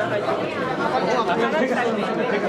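Speech only: a woman talking in Bengali into press microphones, with the chatter of a crowd around her.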